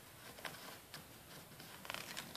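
Faint rustles and a few soft ticks of a picture book's paper page being handled, ahead of a page turn, with a small cluster of ticks near the end.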